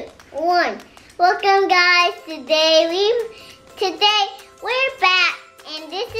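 A young girl singing a short tune, with held notes between quick sliding syllables.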